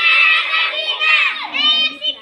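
A group of schoolchildren shouting together in high voices, with a short lull about one and a half seconds in before the shouting picks up again.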